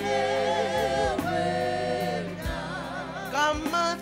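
Gospel worship song: voices singing long, wavering held notes over a steady low accompaniment with occasional drum hits.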